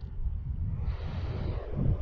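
Wind buffeting the microphone in an uneven low rumble over the wash of small waves breaking on the beach.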